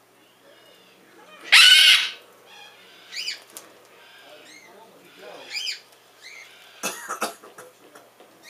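Cockatoos calling: a loud harsh screech about one and a half seconds in, then shorter rising-and-falling calls every couple of seconds, and a harsh burst of calls near the end.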